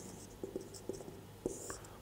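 Marker pen writing on a whiteboard: a few faint, short strokes of the felt tip, one scratchier stroke about a second and a half in.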